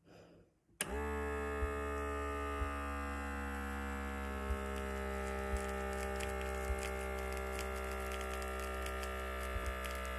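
The small electric air pump of an automatic blood pressure monitor inflating the arm cuff. It starts about a second in with a brief rising whine, then runs as a steady buzz with a few faint clicks.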